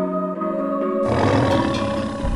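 A tiger roar sound effect that starts about a second in, over background music with held notes.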